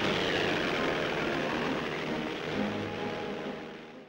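Piston engines of a twin-engine Messerschmitt Bf 110 fighter droning steadily in flight, as heard on an old newsreel soundtrack. A faint falling whine runs through the first couple of seconds, and the sound fades out at the end.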